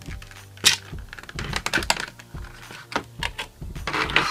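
Clear plastic clamshell packaging being pulled apart and handled: a series of sharp plastic clicks and crackles, with one loud snap about two-thirds of a second in.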